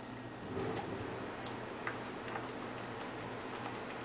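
Siberian Husky chewing and mouthing a soft cupcake: a swell of wet chewing about half a second in, then scattered irregular clicks of teeth and jaws on the food. A steady low hum runs underneath.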